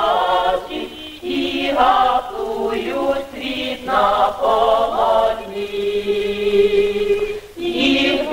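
A choir singing on the film's soundtrack in several short phrases, then one long held note in the second half.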